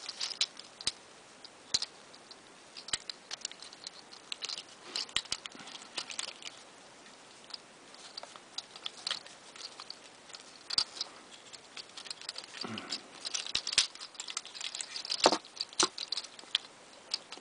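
Hard plastic parts of a Transformers Generations Scoop action figure clicking and scraping as its joints and panels are moved by hand during transformation: irregular small clicks and rustles, with a louder cluster of clicks near the end.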